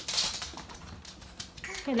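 Small dog's claws clicking on a wood floor as it trots along, a quick run of light ticks loudest at the start. A woman's voice comes in near the end.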